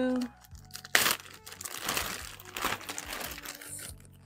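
Clear plastic slider-zip storage bag crinkling as it is handled and opened, with a sharp rustle about a second in and lighter crinkling after.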